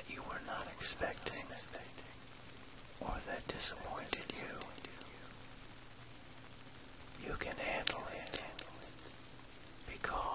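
Whispered voice in three short phrases, about a second in, around three to four seconds in, and near eight seconds, over a steady recording of rain. A low steady tone, the track's delta-range isochronic beat, runs underneath.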